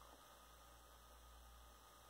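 Near silence: a faint, steady low electrical hum under a light hiss.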